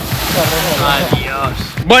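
A splash into the sea, a noisy hiss that starts suddenly and fades over about a second. Excited shouts from people overlap it.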